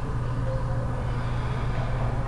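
A steady low hum, even throughout, with no distinct events over it.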